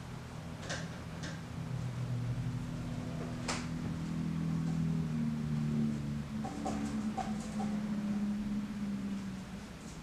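A low, steady hum that changes pitch a few times, with scattered light clicks and taps from oil-painting brushes and palette as paint is picked up and worked onto the canvas; the sharpest tap comes about three and a half seconds in.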